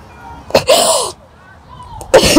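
A woman sobbing into a handkerchief held over her face: one loud, breathy sob with a wavering cry in it, starting about half a second in and lasting about half a second.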